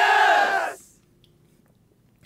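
A short voice-like call under a second long, its pitch rising and then falling, right at the first sip of a cocktail.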